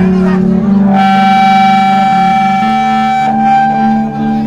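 Live rock band playing, with electric guitar and bass notes ringing on after the drums stop; a long steady high note is held for about two seconds in the middle.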